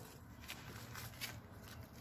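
Faint, scattered clicks and soft rustles of grilled chicken being pulled apart by hand and eaten, over a low steady background rumble.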